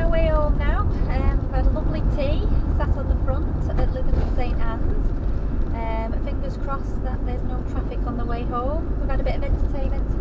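Inside the cab of a moving Fiat Ducato-based motorhome: steady low engine and road rumble, with a woman talking over it.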